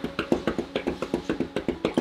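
Legs being shaken out on a yoga mat, the legs and heels patting the mat in a fast, even rhythm of about seven taps a second.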